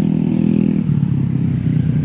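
Engine of a vehicle in motion, heard up close, running with a steady hum whose tone shifts and roughens about a second in.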